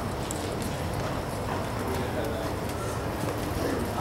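Low murmur of a seated audience under a large tent, with a few faint knocks and clicks.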